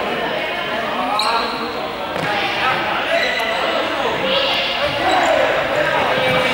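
Players' voices calling out in an echoing sports hall, with the knocks of balls bouncing and being kicked on the floor.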